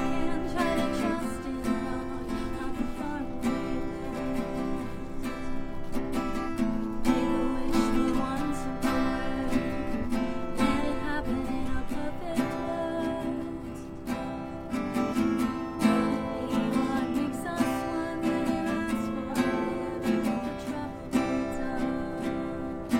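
Acoustic guitar strummed in a steady rhythm as live accompaniment to a song.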